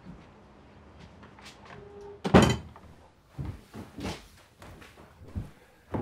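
A house's front door shutting with one loud thud a little over two seconds in, followed by several lighter knocks and thuds.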